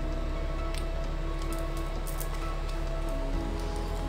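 Soft background music of sustained, held tones, with a few faint ticks of tarot cards being handled as one is drawn from the deck and laid down.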